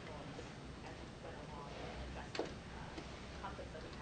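Faint, distant speech of a person talking away from the microphone, with one sharp click a little past the middle.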